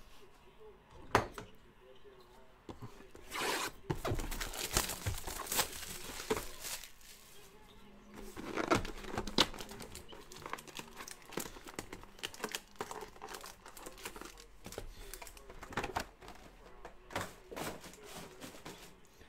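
Plastic shrink wrap torn off a 2014 Panini Totally Certified football hobby box, then the box's foil card packs crinkling as they are pulled out and handled, in irregular rips and crackles.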